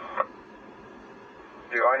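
Police radio traffic over a digital P25 scanner's speaker: the tail of one transmission, a short pause of faint hiss, then a man's voice starts a new transmission near the end.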